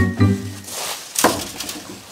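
A man laughing in short pulses over background music, then a single sharp knock a little over a second in.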